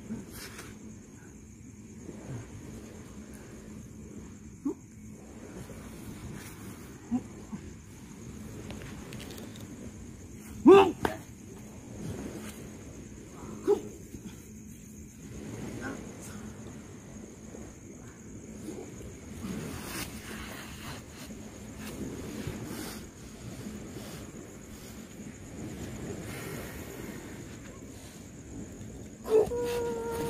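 Scattered short vocal outbursts, grunts or shouts, over a quiet background with a steady high whine. The loudest comes about eleven seconds in, and a drawn-out cry that falls in pitch comes near the end.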